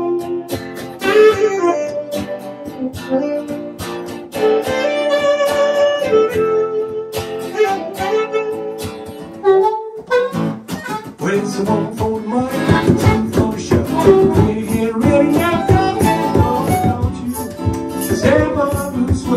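Live band music from harmonica, keyboard and acoustic guitar. Held melodic notes carry the first half, and busier strummed guitar comes in about ten seconds in.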